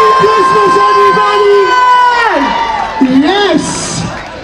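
A man's long drawn-out cheer shouted through a PA system at the end of a countdown, held on one pitch and then falling away about two seconds in, over a cheering crowd. Brief shouting follows.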